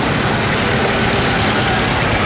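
Busy road traffic, with a petrol tanker truck, minibus taxis and motorcycles driving past, making a steady wash of engine and tyre noise.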